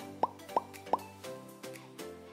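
Cartoon-style pop sound effects: a quick run of short rising bloops, about three a second, marking hearts popping onto an animated title card, over light background music.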